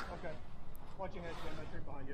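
Faint talking over a steady low rumble of jobsite background.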